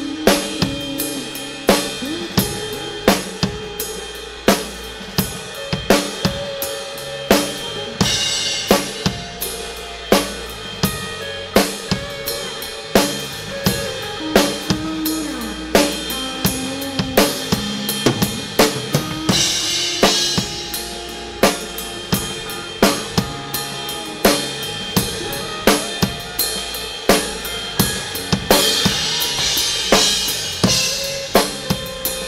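Acoustic drum kit played to a backing music track: a steady beat of kick, snare and hi-hat, with cymbal crashes swelling about eight seconds in, around twenty seconds and near the end.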